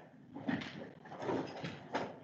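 Chair pulled out and sat in: a few soft knocks and rustles.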